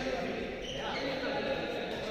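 Indistinct voices echoing around an indoor badminton hall, with a few sharp knocks of play near the end.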